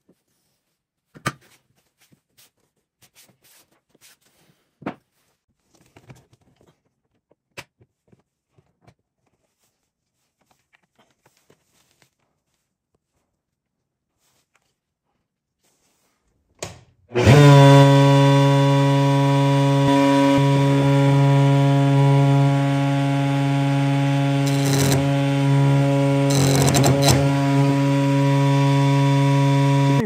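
Small clicks and knocks of hands setting up at a router table, then about 17 seconds in a table-mounted router starts with a large Chinese helical insert-cutter flush-trim bit and runs at speed with a loud, steady hum from terrible vibration, which most likely means the bit's tolerances are not high enough for its mass. Near the end it twice cuts briefly into the maple with a rougher chatter.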